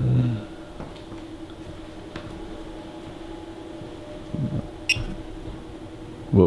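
A steady low hum, even in pitch, with a short low voice-like sound about four and a half seconds in and a sharp click just before five seconds.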